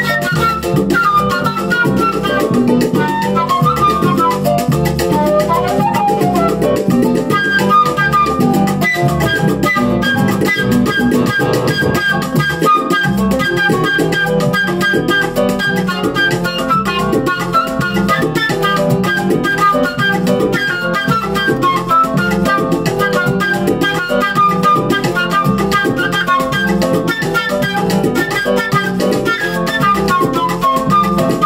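Concert flute playing a melody over a salsa-style backing track with drums, bass and guitar.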